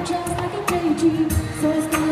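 Live pop song played through a PA: a singer holds long, steady notes over a strummed acoustic guitar.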